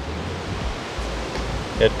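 Wind noise on an outdoor microphone: a steady hiss over a low rumble.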